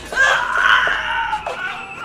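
A man screaming during a violent struggle: one long, loud cry that fades away about a second and a half in.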